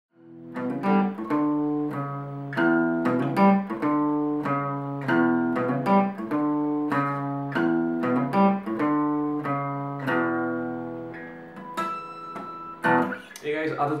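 Fender CD60E steel-string acoustic guitar playing a melodic single-note riff, picked in a steady rhythm. The notes stop about eleven seconds in and the last ones ring on and fade, with a man starting to speak at the very end.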